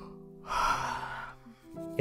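A long breathy sigh, about half a second in and lasting under a second, over gentle music with held notes.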